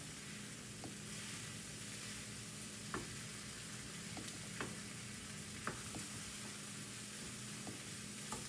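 Cooked beans sizzling in a hot skillet while a flat-edged wooden spoon stirs and crushes them. There is a steady sizzle, and the spoon knocks lightly against the pan now and then.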